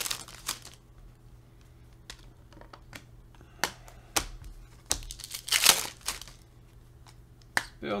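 Foil wrappers of Panini Select basketball card packs crinkling as they are handled and opened, with the cards rustling in the hands: a series of short crinkles and snaps, the longest about five and a half seconds in.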